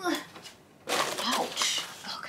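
A woman's voice in two short bursts of speech, the words unclear.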